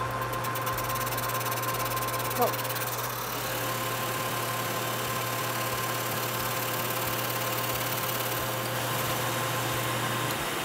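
Metal lathe running steadily at slow speed while a carbide tool takes a light power-fed cut across the brake shoe linings, arcing the shoes to fit the drum, with a shop vacuum running by the cut to pull away the lining dust. The sound is an even, unchanging mix of motor hum and vacuum noise.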